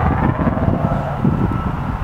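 Steady low rumble of outdoor background noise, with a faint thin tone entering about a second in.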